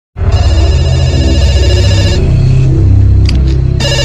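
Very loud, heavily bass-boosted music: a dense, pulsing low beat under a bright electronic melody, and the high melody drops out a little past halfway.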